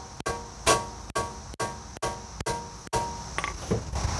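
Hammer striking a steel tool held against the front lower ball joint to separate it from the steering knuckle. About eight evenly spaced metal-on-metal blows, roughly two a second, each ringing briefly.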